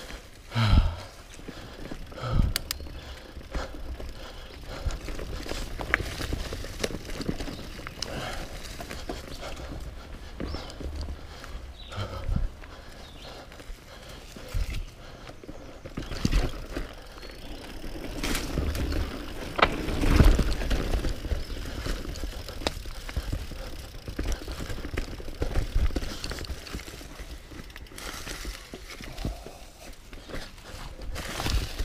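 Mountain bike ridden down a dirt and leaf-covered forest singletrack: tyres rolling with a steady rumble, the chain and frame rattling, and frequent sharp knocks as it hits roots and rocks, the hardest about twenty seconds in.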